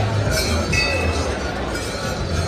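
Metallic clinks, struck every half second to a second, over crowd chatter and a low steady hum.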